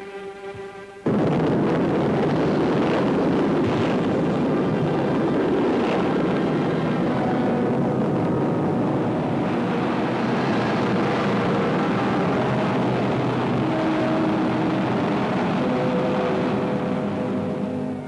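Rocket sled's cluster of rocket motors firing: a loud, steady rushing noise that starts suddenly about a second in and keeps on without a break, with music faint underneath.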